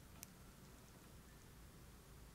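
Near silence: room tone, with one faint short click about a quarter of a second in.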